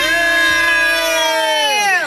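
A child's voice holding one long drawn-out shouted note, steady in pitch, which sinks and fades near the end.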